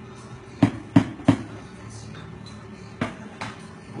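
Sharp knocks of hard objects being handled and set down on a bar counter. Three come close together about half a second in, then two lighter ones near the end.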